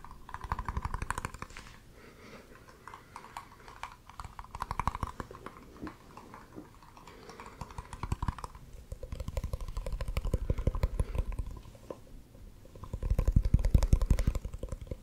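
Rapid finger tapping on small round containers held close to the microphone, in several bursts of quick clicks, the loudest near the end.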